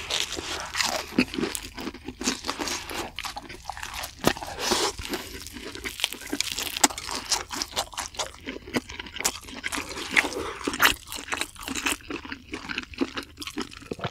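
Close-up eating sounds of crunchy crumb-coated fried bread being bitten and chewed: many sharp, irregular crunches in quick succession.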